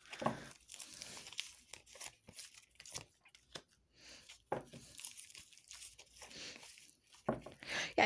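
A tarot deck being shuffled and handled, with a run of soft, irregular card flicks and rustles as a card is drawn and laid down.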